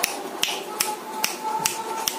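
Sharp snaps keeping an even beat, about two and a half a second, over a faint held tone in the playing song.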